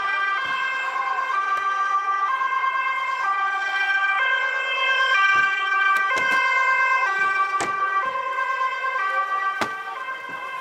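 Police vehicle's two-tone siren sounding, its pitch stepping between a high and a low tone about once a second. A few sharp knocks break in during the second half.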